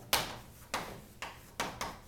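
Chalk on a blackboard while words are written: about five sharp taps and short scrapes, unevenly spaced.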